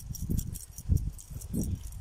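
Wind buffeting the phone's microphone in uneven gusts, loudest about a second in, with a faint metallic jingling.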